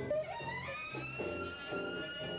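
Instrumental music: low plucked notes repeating about twice a second, with a high note that slides up about half a second in and is then held.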